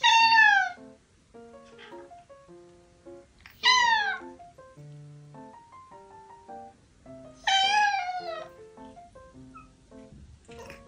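Orange tabby cat meowing three times, each call about a second long and falling in pitch, the first at once, the others about 3.5 and 7.5 seconds in, asking to have the gate opened. Light background music plays throughout.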